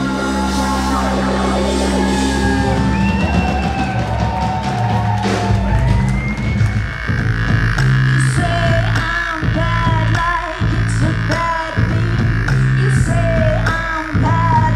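Indie rock band playing live: electric guitar, bass and drums, with a woman's singing voice coming in about halfway through and the drums hitting a steady beat.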